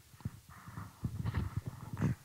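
Handling noise of a handheld microphone being picked up: a run of short, irregular knocks and rubbing thumps.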